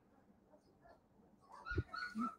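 Young Great Pyrenees puppies whimpering and yipping in short cries, beginning about one and a half seconds in, with a low thump among the first cries.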